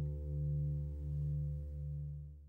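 The last low chord of an acoustic blues guitar ringing out at the end of the song, its sound wavering slowly in level about every three-quarters of a second as it dies away.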